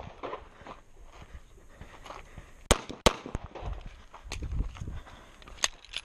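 Pistol shots fired during a timed stage: a few sharp single cracks spread over the seconds, the loudest two close together about three seconds in, with footsteps shuffling between shots as the shooter moves.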